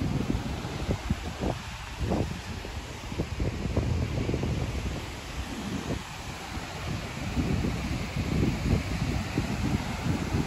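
Strong wind buffeting the microphone in uneven gusts, over the steady wash of heavy surf.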